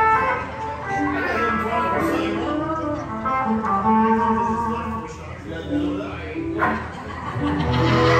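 Live band music led by guitar, with a run of held notes over the band.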